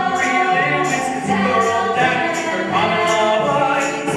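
A chorus of cast voices singing a musical-theatre number, with a steady high percussion tick on the beat about twice a second.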